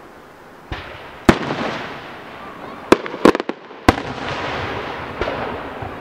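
Aerial fireworks shells bursting: a loud bang about a second in, then three or four sharp reports in quick succession around three to four seconds in, each followed by a long rolling echo.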